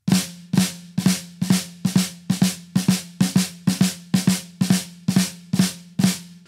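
Flams played on a snare drum in a steady stream, a little over two a second, the quieter grace note landing just before each main stroke. The drum rings between strokes.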